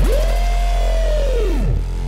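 Hardtek/tribecore electronic music in a break without drums. A held synth tone swoops quickly up, holds, then slides down in pitch about a second and a half in, over a steady deep bass drone.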